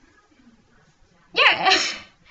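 Faint room noise, then a person sneezing once, loudly, about a second and a half in.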